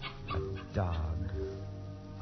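A dog's sound-effect cries over held dramatic music chords, the loudest a falling cry about three-quarters of a second in.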